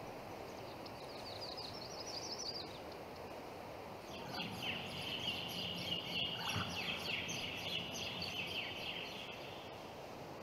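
Birds chirping over a steady outdoor ambience hiss: a short, quick trill rising in pitch about two seconds in, then a longer run of rapid chirps from about four seconds in until near the end.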